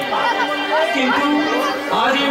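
Speech: a stage performer's voice delivering lines, with crowd chatter behind.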